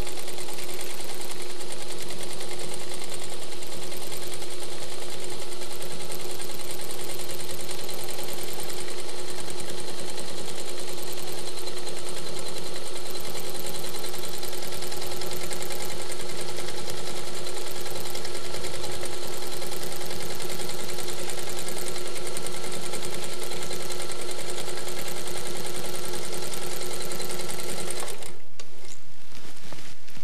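Professional Freehander quilting machine stitching a decorative leaf pattern, running at a steady, even speed, then stopping near the end.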